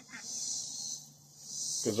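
Steady high-pitched chorus of insects, with a man's voice starting near the end.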